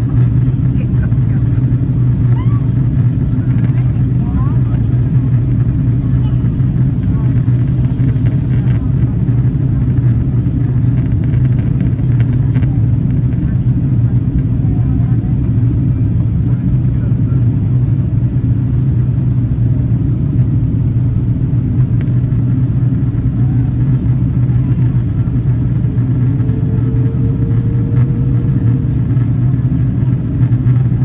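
Steady low drone of an Airbus A330's engines and airflow, heard inside the passenger cabin in flight. It runs loud and unchanging throughout.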